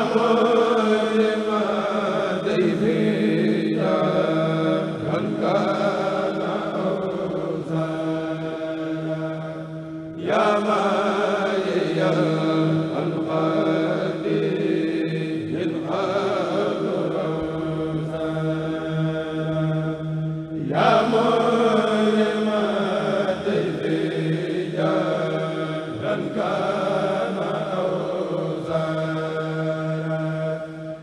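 A choir of men chanting an Arabic khassida (a Mouride religious poem) in unison through microphones, with a low note held steadily underneath. It goes in long drawn-out phrases, and fresh phrases start about ten and about twenty seconds in.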